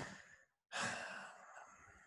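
A man's audible sigh, a breath out lasting about a second that begins near the middle and fades away, with a faint mouth click at the very start.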